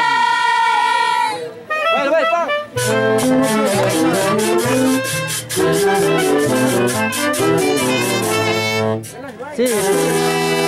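Live festival band music: a held high note breaks off about a second in, then the band plays a fast tune with quick notes, stopping briefly near the end before another long note starts.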